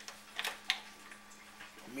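Two light clicks close together from handling the wok and stove as the burner is set to medium heat, over a faint steady hum.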